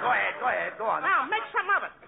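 Speech only: a man talking in fast comedy dialogue.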